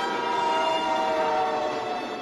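Steam locomotive whistle sounding one long, steady blast over the running noise of the train.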